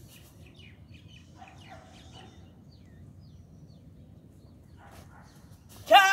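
Small birds chirping faintly in the background. Near the end comes a brief, loud cry with a rising pitch.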